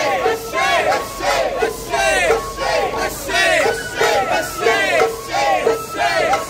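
A group of festival participants shouting a rhythmic chant in unison, about two calls a second, each call rising and falling in pitch.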